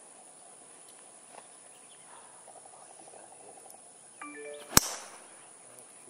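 A golf driver striking the ball off the tee: a single sharp crack near the end.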